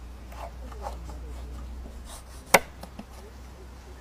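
A knife cutting a wooden pencil in half: a few faint scraping strokes, then one sharp click about two and a half seconds in.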